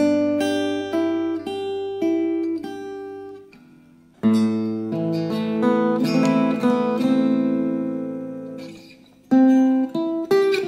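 Joseph Wilson archtop guitar played unplugged in a solo jazz piece: plucked melody notes over a sustained bass note, then a chord built up note by note about four seconds in that rings and slowly dies away, and a new phrase starting near the end.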